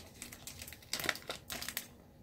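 Small plastic bag around a wax melt sample crinkling as it is handled, in short crackly spells near the start, about a second in and again near the end.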